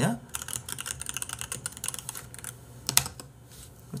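Typing on a computer keyboard: a quick run of key clicks, with one louder click about three seconds in.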